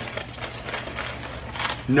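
Stainless steel hand coffee grinder being cranked through the last of the beans, with a light scraping grind. The crank is turning with almost no resistance: the beans are nearly all ground.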